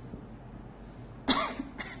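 A woman coughs: one sharp cough about a second and a half in, then a second, shorter one near the end.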